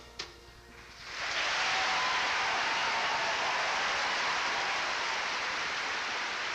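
Concert-hall audience applauding at the end of a song. The last plucked notes die away, then the applause swells in about a second in and holds steady.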